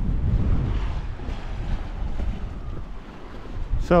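Gusty wind buffeting the microphone in uneven rumbles, over the wash of sea water against a rocky limestone shore.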